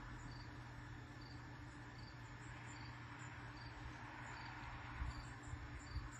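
Faint outdoor ambience: a short high chirp, typical of an insect, repeats about every 0.8 s over a steady low hum and background hiss.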